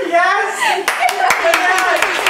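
Two people clapping their hands, starting about a second in, irregular and fast, over laughing voices.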